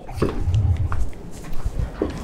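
A man's wordless hesitation sound, a short rising "uh" followed by a low drawn-out "mm" hum of about a second, with a few faint clicks.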